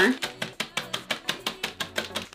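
Corn chips being crushed inside a plastic zip-top bag, a quick, even run of crunching, crinkling strikes at about seven a second.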